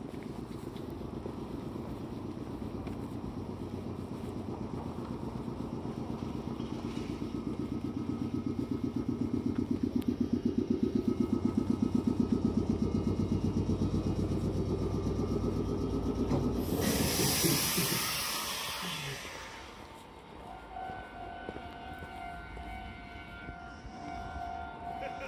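The air compressor of a red Meitetsu electric train standing at the platform runs with a rapid, even thumping that grows louder. About 17 seconds in it stops with a loud hiss of released air. Near the end a faint pulsing two-tone signal sounds.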